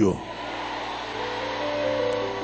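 Soft sustained keyboard chords, held notes coming in and changing about every half second, over a steady rushing hiss.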